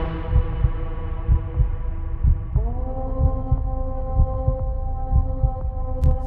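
Soundtrack heartbeat, a slow double thump about once a second, under a sustained droning chord. About two and a half seconds in, a second set of held tones swells in, bending up slightly as it starts.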